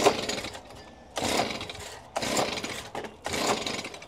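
Handheld gas leaf blower being pull-started: four hard yanks on the recoil starter about a second apart, each a brief whirr of the rope and engine turning over without catching. The blower is stubborn to start and does not fire.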